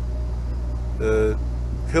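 Steady low hum of a ship's machinery, with a man's brief drawn-out 'e' hesitation about a second in.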